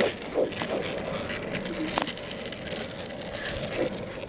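Skate wheels rolling over pavement, a steady rough noise with a sharp click about two seconds in.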